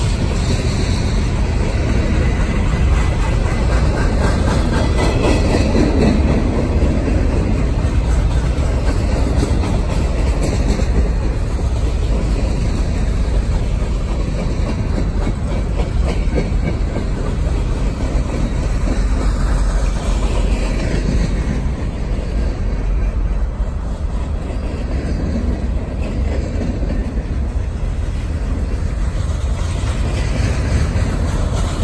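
Cars of a slow-moving manifest freight train (covered hoppers, boxcars and autoracks) rolling past: a steady rumble of steel wheels on the rails.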